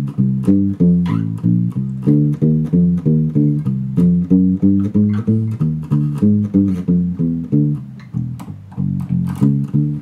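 Six-string Warwick Streamer LX electric bass with bright roundwound strings playing a 12-bar blues with thumb muting: the palm deadens the strings while the thumb plucks, so each note is short and round with the sustain gone, approximating an upright bass. The notes come about two a second, with a softer stretch about eight seconds in.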